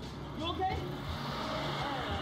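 A car going by on the street, its noise building from about a second in, with snatches of voices over it.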